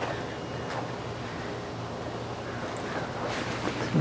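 Steady outdoor noise of wind on the microphone, an even hiss with a faint low hum under it and no distinct event.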